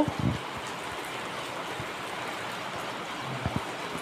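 Steady rain falling, an even hiss, with a few soft low thumps near the start and again about three and a half seconds in.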